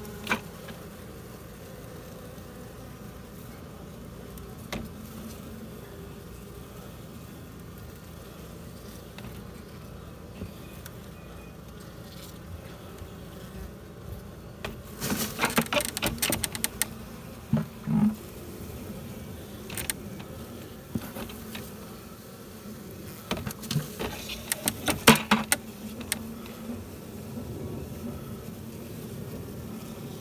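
A honey bee colony's steady buzzing hum close to the microphone. Two bursts of sharp clicking and scraping, about halfway through and again a few seconds before the end, come from a blade working at the comb and wood.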